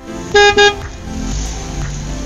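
Car horn honking twice in quick succession, a short high beep-beep, then a low rumble under background music.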